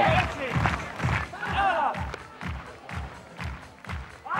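Music with a steady drum beat, a little over two beats a second, with pitched voices rising and falling over it.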